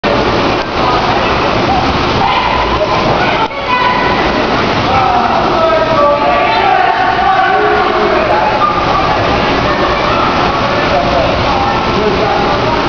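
Indoor swimming pool ambience: a steady wash of water noise and splashing with indistinct voices of swimmers and children mixed in, no words standing out.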